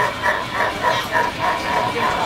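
Grim Reaper animatronic's recorded voice laughing in a steady run of 'ho' syllables, about four a second, dying away near the end.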